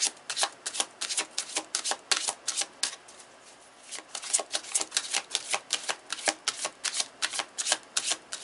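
Tarot deck being shuffled by hand: a quick run of sharp card taps, about four a second, broken by a pause of about a second a little before the middle.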